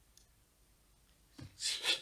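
Quiet room tone, then about one and a half seconds in a short, loud rasping rustle close to a microphone.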